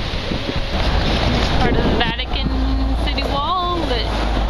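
Wind rumbling and buffeting on the microphone, with a few short voices in the background.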